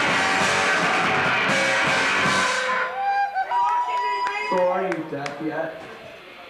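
Live rock band with electric guitar and drums playing loudly, then stopping abruptly a little under three seconds in at the end of the song. Voices follow in the quieter remainder.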